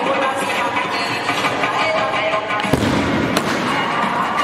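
Stage pyrotechnics firing over Punjabi dance music: a sudden burst of noise about three-quarters of the way in, then a sharp crack, as confetti cannons and spark fountains go off.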